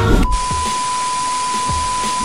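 TV test-pattern transition sound effect: a steady high test-tone beep over static hiss. It cuts in abruptly as the music stops.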